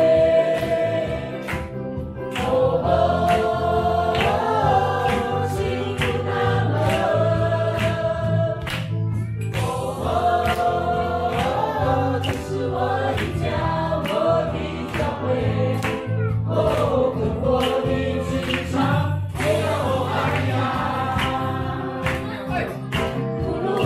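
Live gospel worship song: a woman's lead voice and a group singing, backed by electric bass, drum kit and keyboard with a steady beat.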